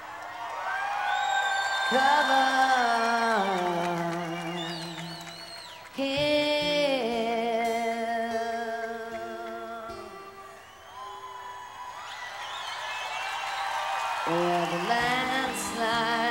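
Live band playing an instrumental passage of a slow ballad: a melodic lead line of long held notes that slide between pitches, over soft accompaniment. Fresh phrases come in about two seconds in, about six seconds in, and again near the end.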